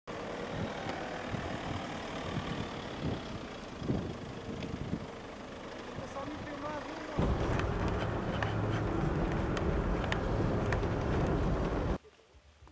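Police Toyota SUV running slowly on a dirt track close by, with voices in the background; a steady low rumble jumps suddenly louder about seven seconds in.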